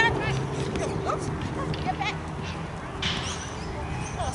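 Outdoor sound from an open football pitch: voices calling out, with short high calls scattered through and a steady low hum underneath. There is a brief louder call about three seconds in.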